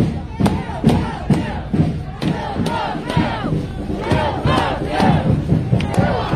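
A marching protest crowd, many voices shouting together and overlapping, over sharp knocks about twice a second.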